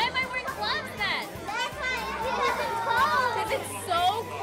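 Young children's high-pitched voices and chatter mixed with an adult woman talking.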